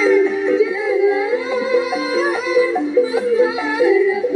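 A woman singing into a microphone over amplified live backing music, her voice holding and sliding between notes.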